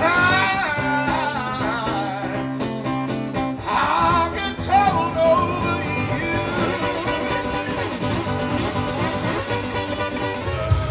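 Live music: a man singing with sliding, held notes over his own acoustic guitar.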